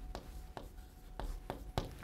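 Chalk writing a word on a chalkboard: about six short, sharp taps and scratches as the letters are stroked.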